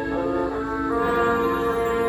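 Marching band brass section holding sustained chords, moving to a new chord about a second in.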